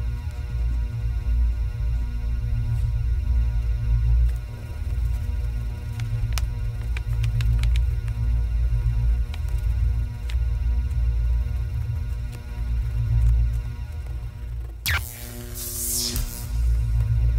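A loud, uneven low hum with steady electrical tones above it, with a few light clicks in the middle and a brushing swish near the end.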